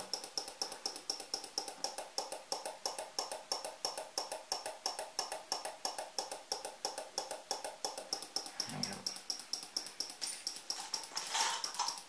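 12 V relay in a home-made relay flasher circuit clicking rapidly and evenly, about five clicks a second, as its contacts switch on and off; the relay-and-capacitor circuit is oscillating, its rate set by a 470 µF capacitor.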